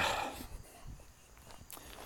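A man's voice trails off at the start, then a quiet outdoor background with a few faint, soft footfalls as he walks.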